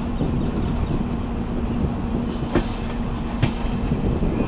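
Indian Railways passenger train running, a steady rumble of wheels on track with a steady low hum. Two sharp wheel clacks sound, a little under a second apart, in the second half.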